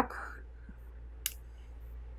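Quiet room with a low steady hum and a short breath at the start. A single sharp, faint click comes about a second and a quarter in.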